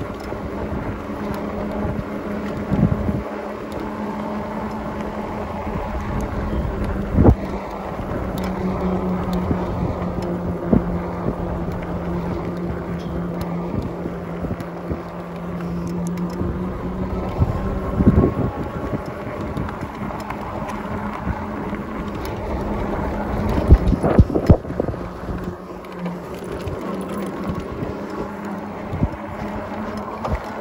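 Ecotric e-bike's electric hub motor whining steadily under pedal assist, its pitch dipping for a stretch in the middle, over wind buffeting the microphone and tyre noise. A few sharp knocks break in, the loudest a cluster about 24 seconds in.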